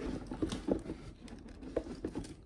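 Pit bull licking and smacking its lips: a string of irregular wet clicks and smacks, the loudest about two-thirds of a second in and again near the end.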